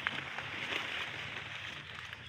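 Quiet outdoor background noise with a couple of faint clicks, and no clear single source.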